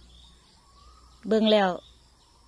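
A woman's voice speaking a few words in Thai a little over a second in, over quiet outdoor background with faint, distant bird chirps.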